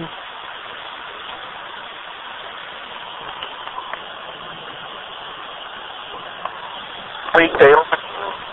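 Hacked Radio Shack 12-587 radio used as a ghost box, scanning continuously through FM stations: a steady hiss of static broken by a few short, faint station fragments.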